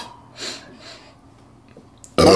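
A person sniffing at the neck of an open glass bottle to smell the drink: one short sniff about half a second in, then a fainter breath.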